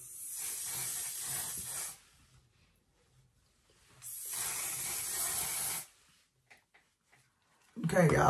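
One/Size makeup setting spray misting onto a face in two long sprays of about two seconds each, a steady hiss with a short pause between them.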